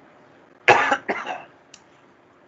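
A man coughing twice in quick succession: a loud cough about two-thirds of a second in, then a second, shorter one right after.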